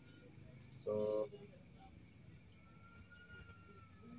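Night insects chirring steadily at a high pitch, with a single spoken word ("So") about a second in.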